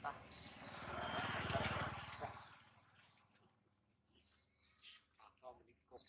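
Birds chirping, with high short calls through the whole stretch. In the first two seconds or so a louder rumbling, rushing noise sits under them, then fades out, leaving the chirps and a few short calls more in the open.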